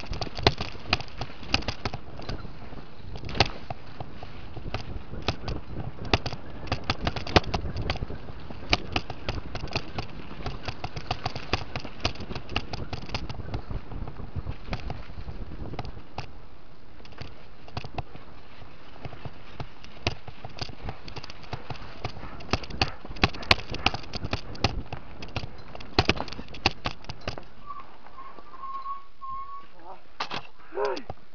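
Mountain bike riding fast down a rough dirt trail, picked up by a camera carried on the bike or rider: a steady rush with constant rattling and sharp knocks from the bumps, densest in the first half and again later on. Near the end a brief wavering high tone sounds over it.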